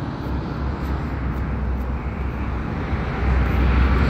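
Steady low rumble and noise of motor-vehicle traffic, with no voice over it, growing a little louder near the end.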